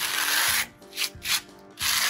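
A hand trowel scraping across a concrete slab as it works thick cement-based resurfacing mix into a crack. There is a long scrape at the start, a few short strokes about a second in, and another long scrape near the end.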